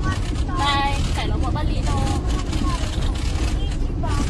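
Car interior noise while driving on an unpaved dirt road: a steady low rumble of tyres and engine, with voices talking over it.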